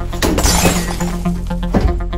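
Glass shattering in one loud crash about a quarter second in, with a smaller knock near the end, over electronic music with a steady beat.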